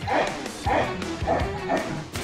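Cartoon proboscis monkey giving four short calls about half a second apart, over background music.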